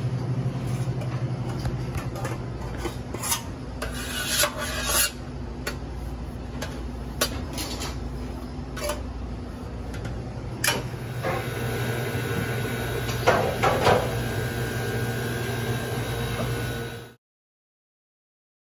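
A towel wiped and tongs scraping around the inside of an emptied stainless-steel deep-fryer vat, with scattered metallic knocks and clinks, drying out water left after a boil-out. A steady low hum runs underneath, and the sound cuts off suddenly near the end.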